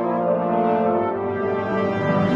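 Television programme theme music, a brass-like section of long held chords that shift pitch a couple of times.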